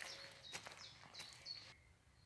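Faint footsteps of rubber wellington boots on a woodland path, a few soft irregular steps, with a few faint high bird chirps; the sound cuts off near the end.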